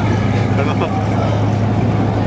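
A car engine running steadily, a low even drone, with faint voices about half a second in.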